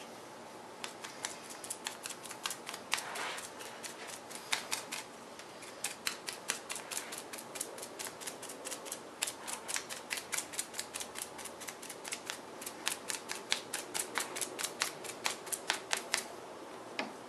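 A resin-loaded brush stippling fiberglass mat onto a mould form: a quick run of short, sharp dabbing taps, about three or four a second, starting about a second in.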